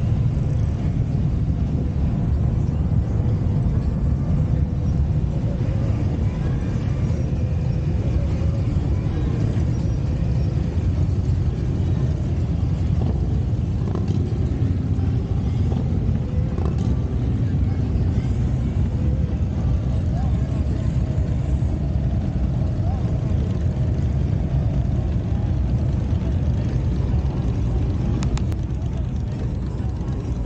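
Engines of a slow parade of vehicles passing close by in a continuous low rumble: Polaris Slingshot three-wheelers, then a stream of cruiser motorcycles. The rumble eases a little near the end as ordinary cars roll past.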